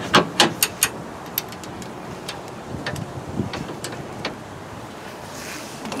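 Sharp metallic clicks from a socket wrench working a bracket bolt: about five quick clicks in the first second, then a few scattered ones, over a steady background hiss.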